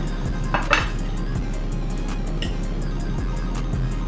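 Knife and fork clinking and scraping on a plate while cutting chicken, with one sharper clink about three-quarters of a second in. Background music with a steady low bass runs underneath.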